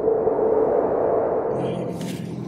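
Transition sound effect: a swelling whoosh with a steady ringing tone that fades away slowly.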